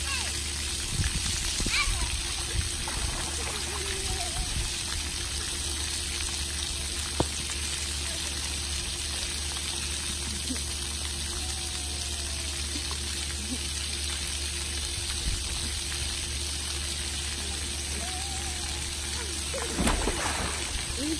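Steady rush of water from splash-pad fountains and a churning jetted pool, with faint distant children's voices now and then and one sharp click about seven seconds in.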